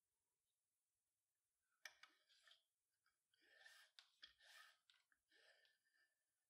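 Near silence, with a faint click and several soft rustling swishes of nylon paracord being pulled through a bracelet buckle to tie a cow hitch.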